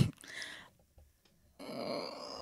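A person's laugh ending with a short grunt-like vocal sound, then a brief pause. About a second and a half in, a hissy rush of noise begins.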